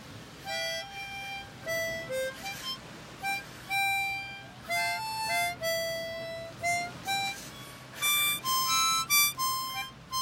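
Harmonica played solo: a slow melody of separate held notes, climbing higher in the last couple of seconds.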